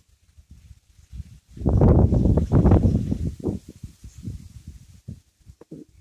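Wind buffeting the phone's microphone in irregular gusts, a low rumble that is loudest from about two to four seconds in.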